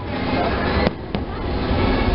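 Fireworks going off: two sharp bangs in quick succession a little under a second in, over a continuous noisy din.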